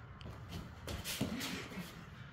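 Bare feet shuffling on training mats and gi cloth rustling as two martial artists grapple through a rear-grab counter.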